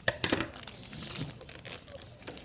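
Foil wrapper of a Pokémon trading-card booster pack crinkling and rustling as it is handled and pulled open by hand, with a few sharp crackles in the first half-second.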